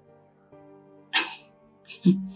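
Soft background music of held, sustained tones under a pause in dialogue. A short, sharp noise cuts in about a second in, and a fainter one comes near the end.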